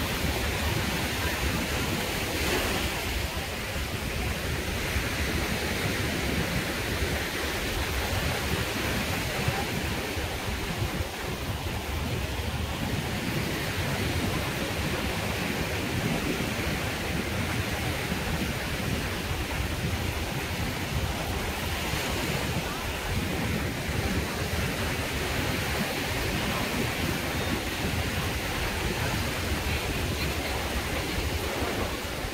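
Small waves washing onto a sandy shore, with wind buffeting the microphone as a steady low rumble; an even, unbroken wash of noise throughout.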